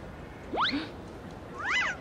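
Two short comic sound effects: a quick upward swoop about half a second in, then a higher meow-like call that rises and falls just before the end.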